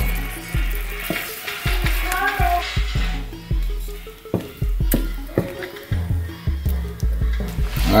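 Background music with a steady low bass line, over hot sugar syrup bubbling and sizzling in a glass baking dish of candied yams fresh from the oven. A wooden spoon stirs through the syrup, with scattered clicks against the glass.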